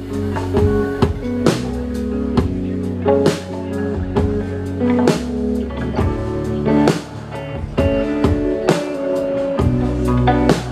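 Live rock band playing an instrumental passage: electric guitars ringing out over a drum kit, with regular drum hits and no vocals.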